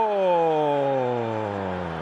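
A male football commentator's long, drawn-out goal shout: one held vowel that falls steadily in pitch and fades toward the end.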